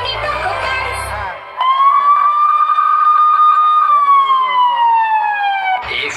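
Dance music over loudspeakers cuts out after about a second, and a single siren tone comes in, holding steady for about two seconds and then sliding slowly down in pitch, part of the DJ mix for the routine. The music comes back in right at the end.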